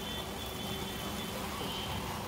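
A silicone spatula softly turning cooked rice in a steel pot, over a steady low background hiss, with no clear knocks or scrapes.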